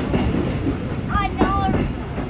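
Train running along the track: a steady rumble of wheels on rail.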